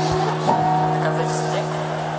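Live concert music: a single steady chord held through, sustained low notes with higher notes stacked above, from the band and symphony orchestra.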